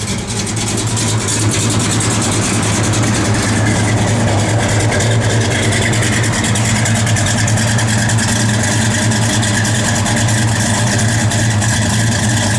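A 1970 Dodge Charger R/T's 440 cubic-inch V8 idles steadily through Flowmaster dual exhaust. It grows louder over the first second or so, then holds an even, deep note.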